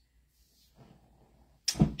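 Near-silent pause with faint room tone, then a single sudden loud thump near the end.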